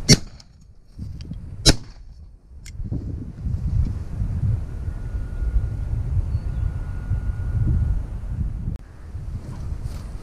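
Over-and-under shotgun fired twice in quick succession, the two reports about a second and a half apart, followed by a lighter click. Wind then buffets the microphone as a low rumble.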